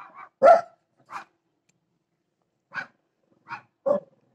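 About six short, sharp barks, irregularly spaced, the loudest about half a second in.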